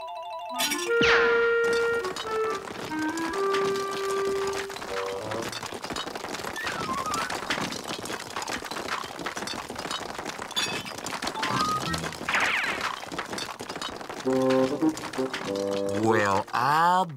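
Cartoon background music with comic sound effects: held musical notes at the start and again near the end, and a long noisy spraying effect through the middle as a hose shoots out chunks of ice.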